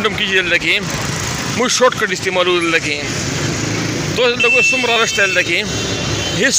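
Busy street traffic of auto-rickshaws and cars running past, with people's voices talking over it. A high, steady tone sounds for about a second in the second half.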